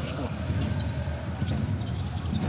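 A basketball being dribbled on the court over the steady din of an arena crowd.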